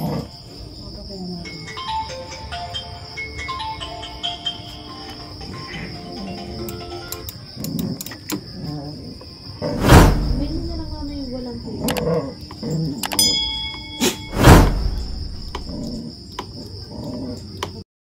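Background music with a steady high tone, broken by two loud knocks about ten and fourteen and a half seconds in.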